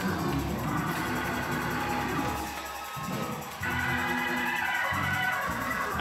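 A keyboard instrument, organ-like, playing held chords, with a fresh chord coming in about three and a half seconds in.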